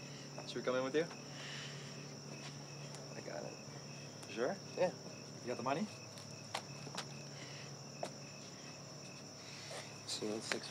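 Crickets chirping steadily at night: a continuous high trill with a slower, evenly repeated chirp under it. Short bursts of a man's laughter come in about half a second in and again around four and a half to six seconds.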